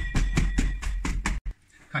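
Hands pounding and kneading salted shredded cabbage and carrot in a plastic tub: a quick run of dull thumps, several a second, stopping suddenly about a second and a half in. The cabbage is being packed down for sauerkraut.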